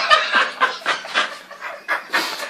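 A man laughing hard in a string of short bursts, about three or four a second, trailing off toward the end.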